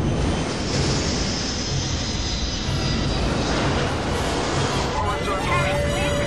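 Film-soundtrack jet airliner in flight: a loud, steady roar. Higher gliding tones come in near the end.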